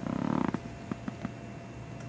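A person's brief low, creaky murmur lasting about half a second, followed by three or four soft clicks, over a steady background hum.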